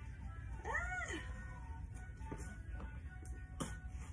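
A taped cardboard subscription box is handled and pried at, with faint clicks and a sharp knock near the end. About a second in comes a single short, high cry that rises and falls in pitch.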